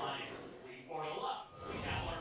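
Only speech: a voice talking, with nothing else standing out.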